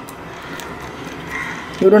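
Amla rasam simmering in a clay pot on a low flame: a soft steady hiss with a few faint ticks. A woman starts speaking near the end.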